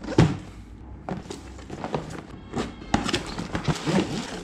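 Cardboard box being opened and its contents handled: irregular knocks, scrapes and rustles of cardboard and plastic packaging, with the sharpest knock just after the start.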